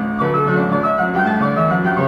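Player piano playing a classical piece from a Hupfeld paper note roll: a continuous flow of overlapping notes and chords.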